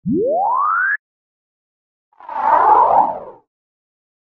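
Comic sound effects: a tone slides up in pitch for about a second, and after a short gap a second, rougher effect with a wavering pitch lasts just over a second.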